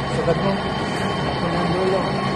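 Hand-held gas torch flame hissing steadily as it heats the copper tubing at a refrigerator compressor, with men talking faintly in the background.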